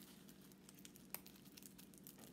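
Faint crinkling of the plastic wrapping on a packet of planner tabs as it is opened by hand, with one small click about a second in.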